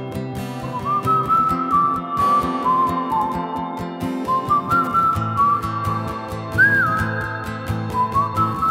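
Song passage with no singing: a high whistled melody, gliding slightly between notes, over the band's backing.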